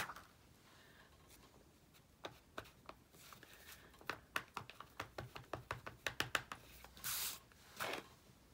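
Clear acrylic stamp block dabbed repeatedly on an ink pad: a run of light clicks, closer together in the second half. A short rustle follows near the end.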